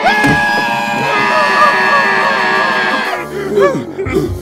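A cartoon character's long scream of fright, held for about three seconds over music, giving way near the end to shorter wailing sobs.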